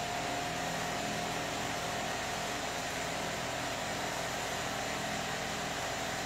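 Steady background room noise: an even hiss with a faint low hum, unchanging throughout.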